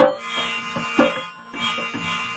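Harmonium holding steady chords while a dholak drum beats a rhythm, several sharp strokes a second, in an instrumental passage of devotional music.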